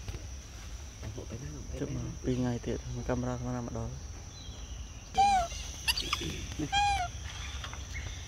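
Baby macaque giving two short, high-pitched, arching squeaks about a second and a half apart, over a steady high drone of insects.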